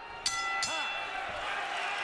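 Boxing ring bell struck about a quarter second in and ringing on with several steady metallic tones that fade slowly, signalling the end of the round.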